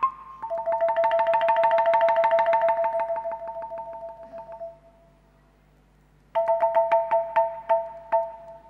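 T'rưng (Central Highlands bamboo xylophone) played with mallets: two notes struck in a fast roll that fades away over about four seconds. After a short lull the strikes come back loud, about three or four a second.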